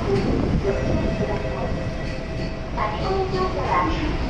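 Shinkansen platform noise: a standing N700S train's steady hum under voices on the platform, with a few words of speech near the end.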